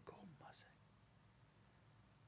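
Near silence: a pause in a man's speech, with faint traces of his voice in the first half second.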